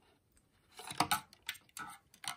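A few short clicks and rustles of plastic model parts and wiring being handled and pushed into place, starting about two-thirds of a second in.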